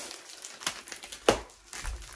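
A plastic bag holding a pair of sunglasses being handled, rustling and crinkling, with a sharp click just over a second in and a couple of low thuds near the end.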